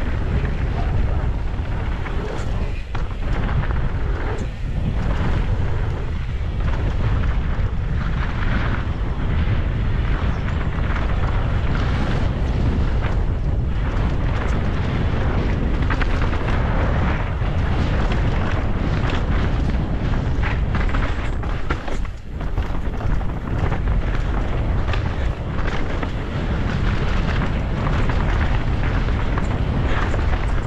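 Downhill mountain bike ridden fast down a dirt trail: a continuous rumble of wind buffeting the action-camera microphone and knobby tyres on dirt, with frequent clattering and knocks from the bike over bumps and roots. There are a few short dips in the noise, about 3 s, 4.5 s and 22 s in.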